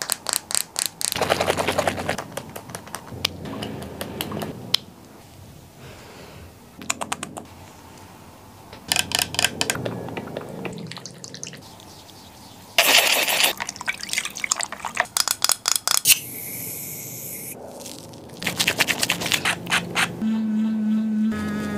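Close-miked wet skincare sounds: bursts of crackly, squishy rubbing as makeup remover and foaming cleanser are worked over the face with the fingers, with a plastic remover bottle handled near the start. Late on, a steady hiss lasts about two seconds.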